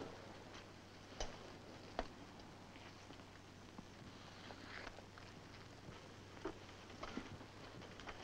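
Near silence on an old film soundtrack: steady faint hiss and hum, with a few scattered faint taps.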